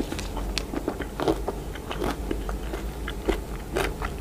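Close-miked chewing of a chocolate-coated strawberry: irregular crunches and crackles of the coating and wet mouth sounds, several a second, with the sharpest crunches about a second in and near the end.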